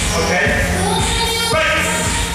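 Loud workout music with a steady beat playing over a gym's loudspeakers.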